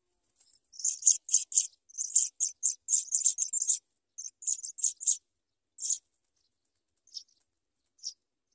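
African pipit nestlings begging at the nest: a rapid run of short, high, thin calls, dense for the first five seconds, then a few scattered ones.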